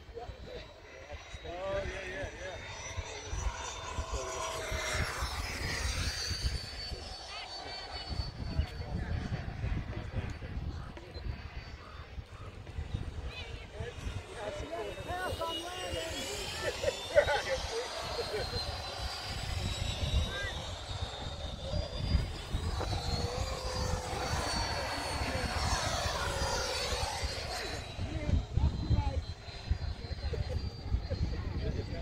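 Electric ducted-fan model jets (Freewing F-22s) flying passes: a high fan whine that bends in pitch as each jet goes by, swelling into a rushing sound three times, around 5, 16 and 25 seconds in. Wind rumbles on the microphone underneath.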